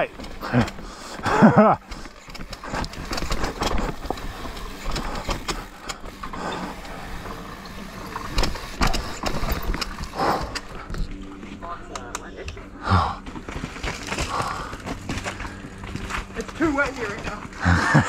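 Mountain bike riding down a steep dirt and root trail: tyres running over loose dirt and the bike knocking and rattling over the bumps, with the rider laughing about a second and a half in and making brief vocal sounds later.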